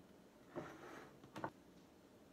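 Metal scoop scraping and clinking against a ceramic bowl while ladling cake batter: a soft scrape about half a second in, then a sharp clink, the loudest sound, a little before the end of the second.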